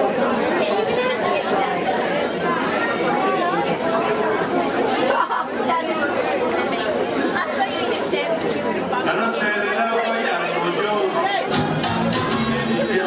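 Crowd chatter in a large hall: many voices talking at once in a steady din. Dance music starts just before the end.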